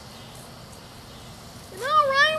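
A high-pitched, drawn-out cry starts near the end, rising in pitch as it begins, over faint steady outdoor background.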